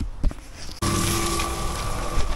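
Belle cement mixer running with a steady hum while its drum turns a batch of sand-and-cement mortar, cutting in suddenly about a second in. Before that, a low rumble of wind or handling on the microphone and a single knock.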